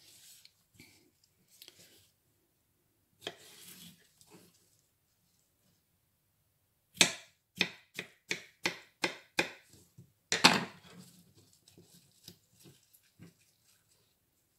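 Kitchen knife cutting watermelon into pieces on a wooden cutting board: a run of about eight sharp knocks of the blade on the board, a little under three a second, then a louder knock and a few softer taps.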